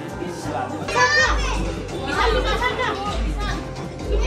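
Background music with a steady bass beat under household chatter, with a child's high-pitched squealing shout about a second in.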